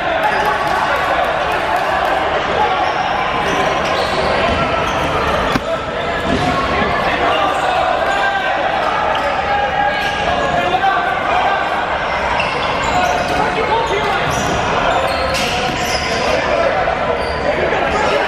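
Rubber dodgeballs being thrown and bouncing off a hardwood gym floor and walls, amid a constant din of many players' overlapping shouts and calls, echoing in a large hall.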